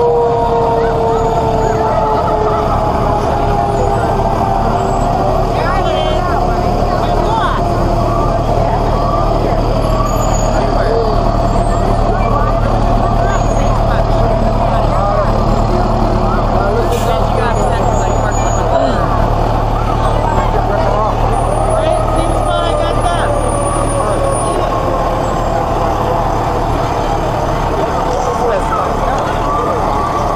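Fire trucks rolling slowly past with their diesel engines running in a steady low rumble. A siren tone slides slowly down in pitch over several seconds, and another slow downward slide comes near the end.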